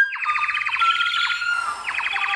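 A fast warbling trill from a bird whistle imitating birdsong, its pitch stepping between a few notes. It breaks off briefly near the end and starts again at once.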